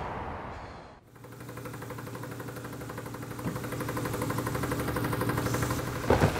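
Engine idling: a steady, pulsing mechanical hum that starts about a second in and grows slowly louder. Before it, a haze of background noise fades out.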